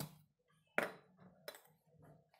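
A spoon clinking against containers while spices are measured out by the spoonful: three short sharp clinks, the loudest about a second in.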